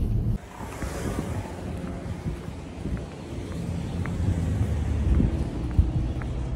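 Wind buffeting a phone microphone during walking, a steady low rumble, with faint footsteps on concrete about once a second later on. It follows a moment of car-cabin road noise that cuts off abruptly just into it.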